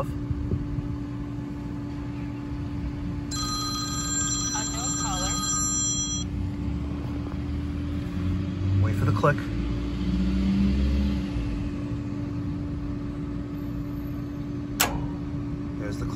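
A single sharp click near the end: the Honeywell gas valve of a Jandy LRZ pool heater opening after a very long delay in the ignition sequence, a delay the technician puts down to a bad gas valve. Under it runs a steady hum, and a phone-like ringing sounds for about three seconds early on.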